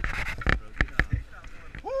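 A man gives a loud, drawn-out 'woo!' whoop near the end, held on one pitch, after a few scattered knocks and bumps.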